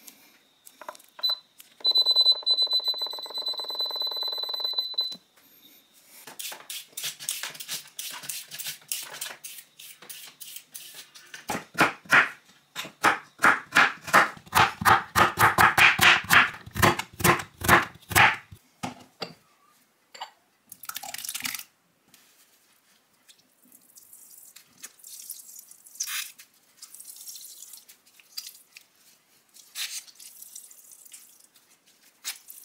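Instant Pot electric pressure cooker beeping after a button press: one steady, high electronic tone lasting about three seconds. Then a crinkle cutter chops carrots on a wooden cutting board in quick, regular strokes, about two to three a second, for some twelve seconds.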